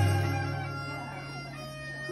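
Folia de Reis folk ensemble music: a loud chord from the string instruments rings on over a low steady drone, slowly fading.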